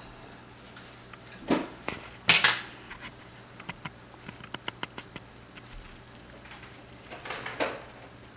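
Handling noise: a few short rustles and a run of small, irregularly spaced clicks in the middle.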